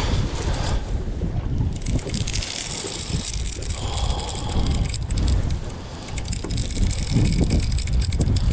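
Wind buffeting the microphone over open water, with a dense run of fine rapid clicks from a baitcasting reel as a heavy fish pulls against the bent rod.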